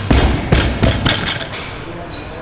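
A loaded barbell dropped onto the gym floor after a heavy deadlift, hitting with three heavy thumps in the first second as it lands and bounces.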